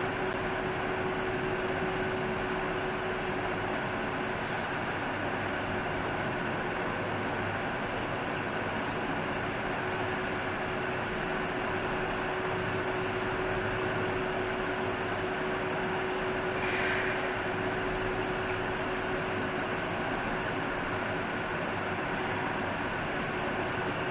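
Steady background noise: an even hiss with a constant low hum, and a brief faint higher sound about two-thirds of the way through.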